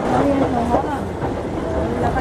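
Escalator machinery running with a steady low rumble, with people's voices talking over it.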